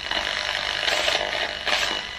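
Spirit box sweeping through radio frequencies: a steady hiss of static that swells in short surges every second or so, in which ghost hunters listen for spirit voices.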